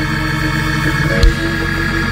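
Church organ holding sustained chords under a pause in the preaching, with a single drum-like thump about a second and a quarter in.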